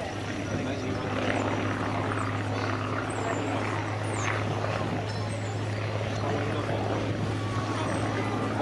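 Hawker Hurricane's Rolls-Royce Merlin V12 engine running steadily as the fighter flies overhead, a constant low hum that neither rises nor falls.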